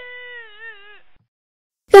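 A high, wavering, drawn-out vocal wail that sinks and fades after about a second. Near the end comes a short, loud cry of 'Ah!' falling in pitch, a woman's yelp of pain as she bumps her head.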